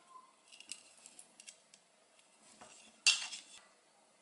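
Plastic toy food pieces being handled over a toy cutting board: faint scattered clicks and taps, with one short rasping noise about three seconds in.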